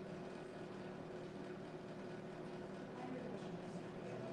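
Steady room tone: a low, even hum with a faint, indistinct murmur of voices in the background.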